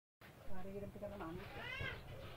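Faint voices in the background, ending in a short high call that rises and falls.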